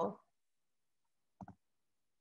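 Two short clicks in quick succession about one and a half seconds in, otherwise near silence after a spoken word trails off.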